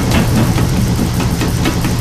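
Fight-scene soundtrack of a martial-arts film: a steady low rumble with many quick faint hits running through it.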